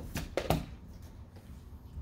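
A quick cluster of sharp knocks or clatters from a hard object being handled, the loudest about half a second in, over a steady low room hum.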